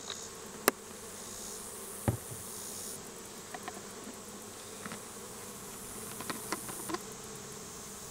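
Honeybees buzzing around an open hive, a steady hum, broken by a few sharp plastic clicks and a light knock as the plastic mite-wash jars and the alcohol bottle are handled and set down.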